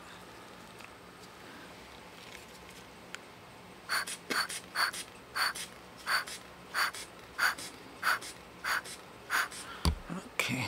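Quiet at first. Then, from about four seconds in, a run of about ten short, breathy puffs of air come at an even pace of roughly three every two seconds.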